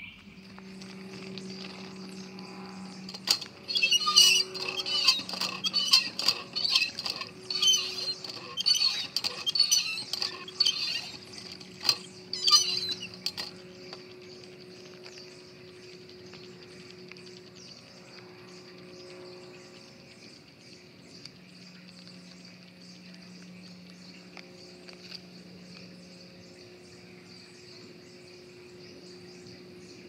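Footsteps and rustling in dry leaf litter, a run of loud crunching strokes lasting about ten seconds, then a steady drone of woodland insects.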